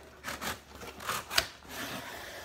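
Cardboard shipping box being cut and opened: a few short scraping strokes as the taped flaps are slit and pulled apart, the loudest about one and a half seconds in, then a steady rustle of cardboard.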